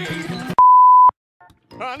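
Music that cuts off about half a second in, replaced by a loud, steady electronic beep at one pitch that lasts about half a second and stops abruptly, followed by a brief silence.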